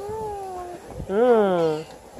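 Two hummed closed-mouth 'mm-hmm' replies. The first is high and falling; the second comes about a second in and rises, then falls.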